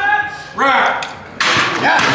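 Spectators yelling short calls of encouragement at a bench-pressing lifter. About a second and a half in, a crowd suddenly breaks into cheering and applause as the lift is completed.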